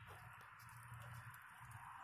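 Near silence: faint steady background hiss and low hum.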